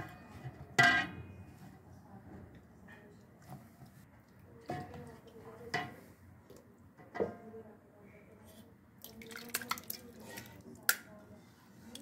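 Marinated chicken pieces being set down in a large metal cooking pot: scattered wet slaps and light knocks against the metal, the loudest about a second in.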